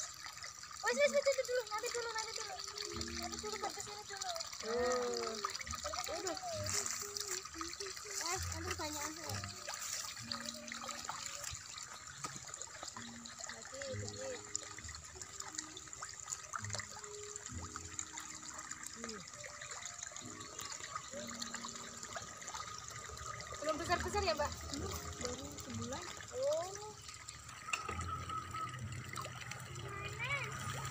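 Pond water trickling and splashing, with voices in the background.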